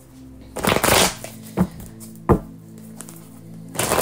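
A deck of animal oracle cards being shuffled by hand: a longer rush of sliding cards about half a second in, two short snaps of cards a little later, and more shuffling starting near the end, over soft background music.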